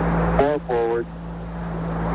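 Hiss of the Apollo 11 air-to-ground radio channel during the lunar-module descent, over a steady low hum, slowly growing louder. About half a second in it is broken by a short, clipped radio voice.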